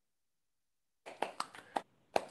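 Silence, then about a second in a short burst of hand claps, quick and sharp, heard through a video-call microphone.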